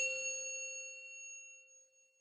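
A single bright bell-like chime, the sound effect of a logo reveal, struck once at the start and ringing out, fading away over about two seconds.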